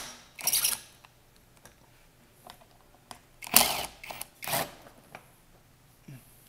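Short scuffing handling noises: one about half a second in, then two close together around three and a half and four and a half seconds in, with near quiet between. The drill is not running.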